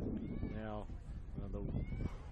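A voice calling out twice in drawn-out calls: a longer one falling in pitch about half a second in, then a shorter one about a second later, over a low steady rumble.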